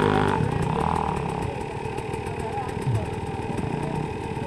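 Dirt bike engines idling, a steady hum with no revving.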